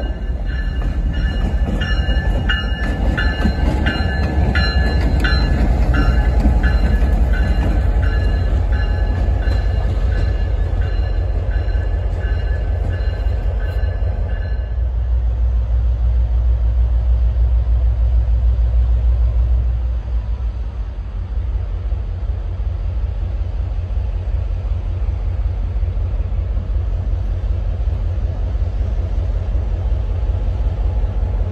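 Railroad passenger cars rolling on the track, the wheels giving a high-pitched squeal with regular clicks over it. About fifteen seconds in this stops abruptly and gives way to the low, steady rumble of a diesel locomotive's engine as the locomotive approaches.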